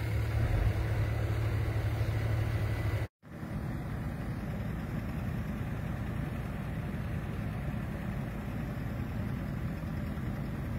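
Excavator diesel engines running steadily. The sound cuts out for a moment about three seconds in, then the steady engine drone resumes.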